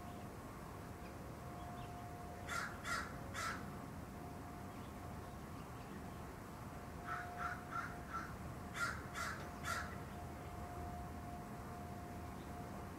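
Crow cawing: three harsh caws about two and a half seconds in, then a run of about seven quicker caws starting about seven seconds in.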